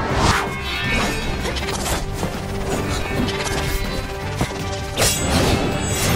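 Fight-scene soundtrack: background music with added sword-fight sound effects, several sharp hits and swishes of blades. The strongest hits come just after the start and about five seconds in.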